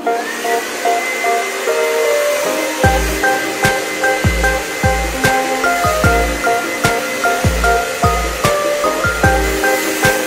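Handheld hair dryer switched on and running steadily, its motor whine rising briefly as it spins up and then holding. It plays under background music: piano with a steady kick-drum beat that comes in about three seconds in.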